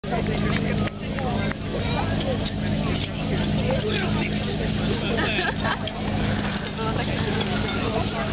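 Portable fire pump's engine running steadily at speed, with many voices shouting over it.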